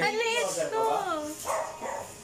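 High-pitched excited squeals and exclamations of a person's voice, with no clear words, fading about halfway through.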